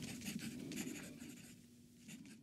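Rapid scratching like a pen nib writing on paper, over a faint steady low tone, the whole fading down toward the end.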